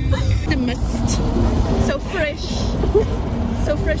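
Steady low rumble of a small bus driving, heard from inside the cabin, with indistinct voices over it.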